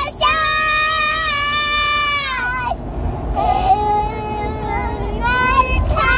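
A child singing two long held notes: a high one, then after a short breath a lower one.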